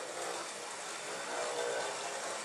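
Model train running: a steady, low-level hum and rolling noise from the locomotive's motor and wheels on the track, under an even hiss.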